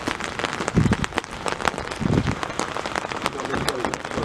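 Rain pattering on a hard wet surface: many irregular sharp drop clicks over a steady hiss, with two short low thumps about one and two seconds in.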